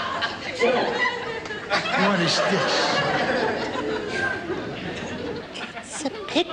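Indistinct chatter: several voices talking at once, none clearly picked out.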